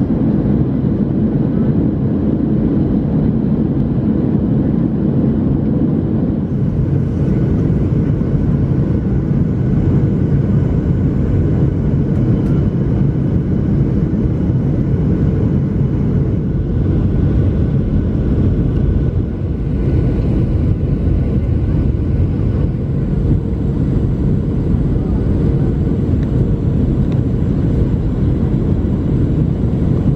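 Jet airliner cabin noise heard from a window seat over the engine: a loud, steady low rumble of the jet engines and airflow during the descent to landing.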